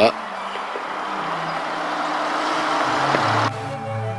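Background music over a steady rushing noise that grows a little louder, then cuts off abruptly about three and a half seconds in, leaving the music alone.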